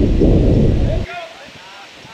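Wind buffeting the outdoor camera's microphone, a loud low rumble that cuts off abruptly about a second in. Faint, distant shouted voices carry over it.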